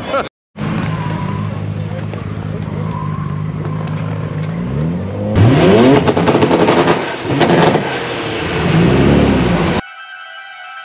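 R34 Nissan Skyline's straight-six engine idling steadily, then revved hard a few times in the second half, the loudest rev starting about halfway through.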